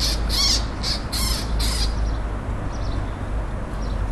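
Eurasian magpie giving its harsh, rasping chatter call: about five rapid bursts in the first two seconds, then only faint calls. A steady low rumble runs underneath.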